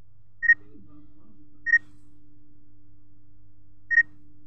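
Three short high-pitched beeps, the first two about a second apart and the third near the end, over a faint steady hum.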